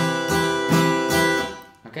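Acoustic guitar strummed on an F chord in a steady eighth-note pattern, with a hammer-on of a fretting finger, the strokes coming two or three a second; the chord dies away near the end.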